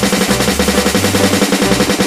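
Rapid, continuous snare drum roll played on the Real Drum phone app's sampled kit, dozens of quick even hits, over a backing track's stepping bass line.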